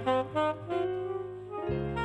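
Tenor saxophone playing a quick run of short notes that settles into a longer held note, over a backing track. A new, deeper backing chord with bass comes in near the end.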